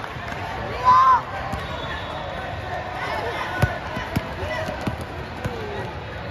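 A basketball bouncing a few times on a hardwood court as it is dribbled, over the steady hubbub of a crowded hall. A loud short shout about a second in is the loudest sound.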